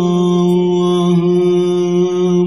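Male voice singing a Turkish ilahi without instruments, holding one long, steady note on the closing word 'aç' over a low vocal drone that stays on one pitch.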